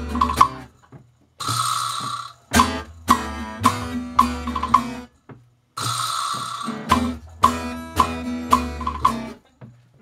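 Small live band playing an instrumental passage: a hollow-body archtop guitar strummed in rhythmic chords about twice a second, over drum kit and double bass. The band stops short twice, about a second in and about five seconds in, then comes straight back in.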